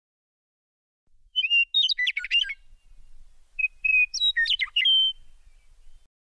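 Bird song in two short phrases, each a few clear whistled notes followed by a quick jumble of rising and falling notes.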